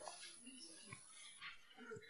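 Near silence: faint room tone with a few very faint small noises.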